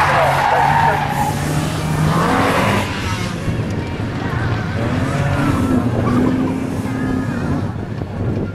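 Toyota Altezza SXE10's four-cylinder engine revving up and down as the car is driven hard around a tight cone course, with bursts of tyre squeal in the turns, loudest near the start and about two to three seconds in.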